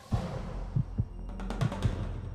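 Animated logo sting for the Région Nouvelle-Aquitaine ident: a rush of sound opens into a steady low drone, with about five deep drum-like thumps at uneven intervals and a cluster of sharp clicks in the second half.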